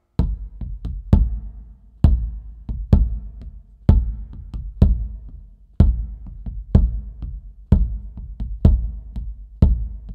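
Music: a percussion passage that begins abruptly, with a strong drum hit about once a second and lighter hits in between.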